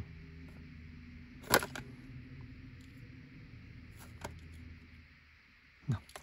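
Plastic blister pack of a carded die-cast toy car clicking twice as it is handled in the hand, over a low steady hum.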